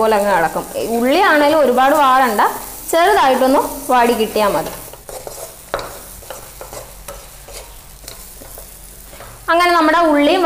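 Shallots and dried fish frying in a kadai, stirred with a wooden spatula that scrapes the pan. A woman's voice is loudest over roughly the first half; after that the frying and stirring are heard on their own, quieter, until her voice returns near the end.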